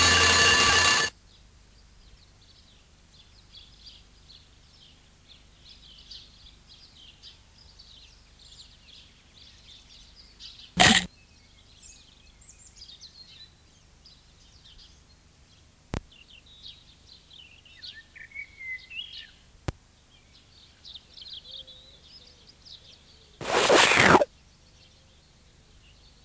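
A loud chiming ring, like an alarm going off, cuts off about a second in. Birds then chirp and twitter softly for the rest of the time, a morning birdsong background. A short loud burst comes near the middle and another just before the end, with two sharp clicks between.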